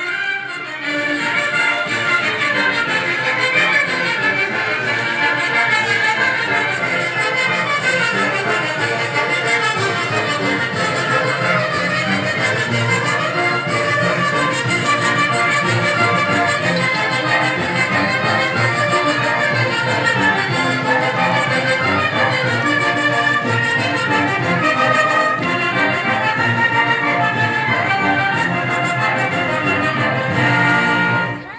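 Brass band music striking up and playing a lively son for a folk dance, with trumpets and trombones carrying the melody.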